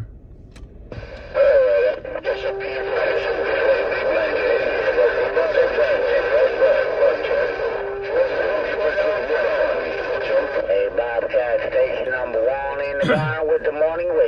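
A CB radio receiving another station: a distorted, thin-sounding voice transmission over static, too garbled to make out, which starts about a second in and breaks off just before the end.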